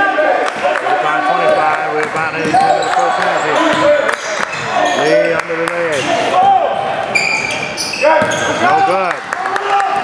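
A basketball being dribbled on a hardwood gym floor during live play, with repeated sharp bounces, many short sneaker squeaks and voices in the gym.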